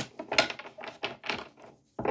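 A tarot deck being shuffled by hand: a run of about five short, irregular rustling strokes of the cards.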